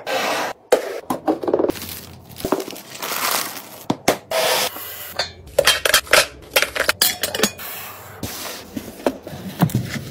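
Containers and packaging being handled and set down in quick succession for restocking: irregular knocks and clicks with scraping and rubbing between them.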